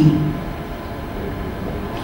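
Steady low background hum and hiss of the lecture hall's room noise, with no rise or fall, heard in a pause between sentences.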